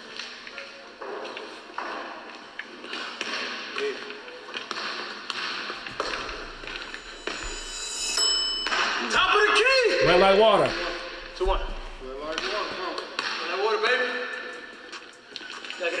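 A basketball bouncing on a hardwood gym court during a one-on-one game, with a shot hitting the rim about eight seconds in and players' voices around it.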